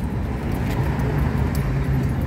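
Street traffic: a steady low rumble of car and truck engines on a busy town street.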